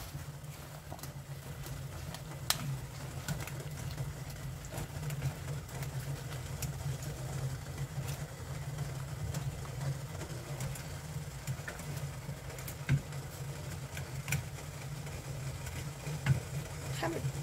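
Pot of salted water boiling steadily on the stove while butterbur blanches in it: a low, even rumble. A few faint clicks from a wooden utensil against the stainless strainer basket.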